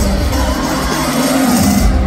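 Live pop music played loud through an arena sound system, with heavy bass and a crowd cheering.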